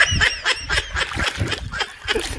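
A person's high-pitched cackling laugh in quick short bursts, turning breathier in the second half.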